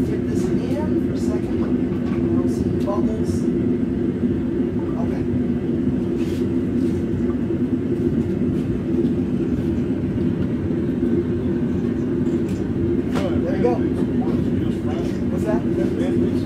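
Gas forge burner running steadily, a continuous hum on a few low pitches, with occasional faint metal clinks.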